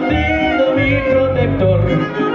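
Live band music played loud over stage speakers: string instruments over a pulsing bass beat, with a long, wavering sung note.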